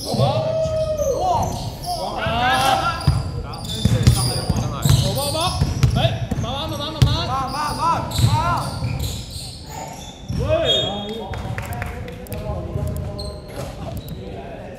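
Basketball dribbled on a hardwood gym floor during live play: a run of dull thuds, with sneakers squeaking and players calling out.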